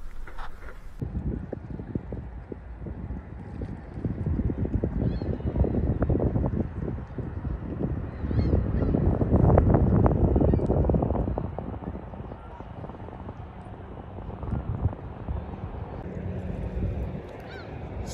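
Wind buffeting the microphone, gusting loudest about halfway through. Faint gull calls come a few times over it.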